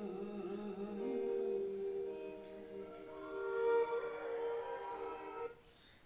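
A male singer holding sustained notes of a slow ballad over soft instrumental backing. The music cuts off abruptly near the end.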